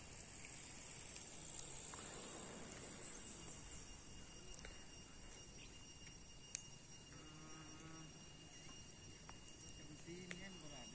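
Faint outdoor ambience: a steady high-pitched insect drone over a soft hiss, with a single sharp click about six and a half seconds in.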